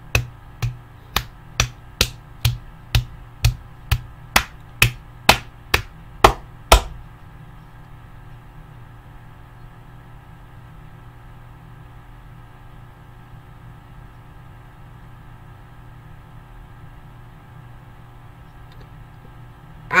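One person clapping hands in a steady rhythm, about two claps a second, around fifteen claps that stop about seven seconds in. After that only a low, steady room hum remains.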